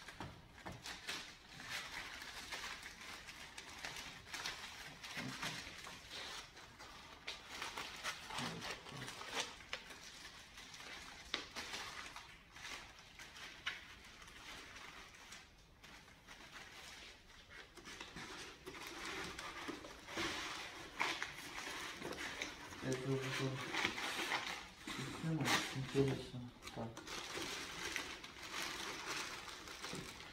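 Packaging being handled while a soundbar is packed back into its box: continuous irregular rustling with many small clicks and scrapes.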